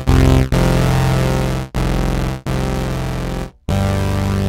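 Dave Smith Instruments hardware synthesizer playing a series of held notes, each about a second long with short breaks between them, in a bright tone.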